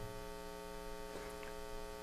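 Faint, steady electrical mains hum in the audio line: a buzz made of a stack of evenly spaced tones that does not change.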